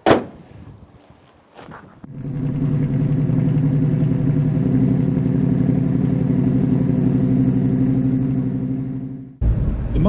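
A 1970 Ford Mustang's 302 cubic-inch V8, with a Holley four-barrel carburettor, running at low revs as the car rolls slowly past, a steady deep engine note. It comes in about two seconds in after a brief knock and cuts off suddenly near the end.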